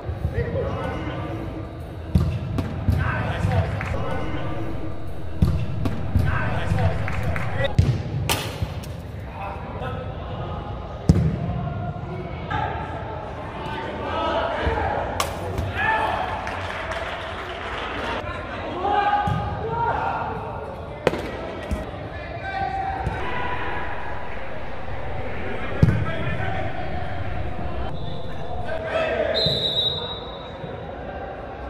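Football being kicked on artificial turf in a large indoor hall: a scattering of sharp ball strikes, with players' shouts and calls echoing around them.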